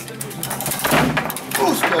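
Foosball table in play: a steady run of sharp clacks and knocks as the ball strikes the plastic figures and the table walls and the players snap the rods. A voice talks over it.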